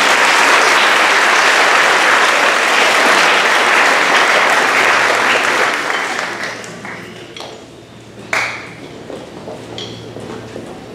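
Audience applauding, loud at first and dying away after about six seconds. A single sharp knock sounds a little over eight seconds in.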